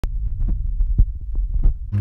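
Low rumbling buffeting on a phone microphone, broken by a quick series of knocks and thumps as the phone is handled against a car roof.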